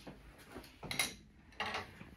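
A few faint clicks and light knocks of small objects being handled, the loudest about a second in.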